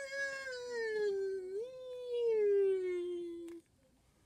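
One long, drawn-out vocal sound lasting about four seconds, its pitch sliding slowly downward with a brief lift in the middle before it stops.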